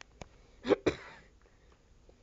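A short cough, two quick bursts close together a little under a second in, trailing off quickly.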